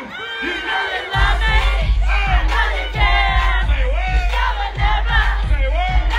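Concert crowd yelling and singing, then about a second in a heavy bass-driven hip-hop beat kicks in over the PA, loud and close through a phone's microphone.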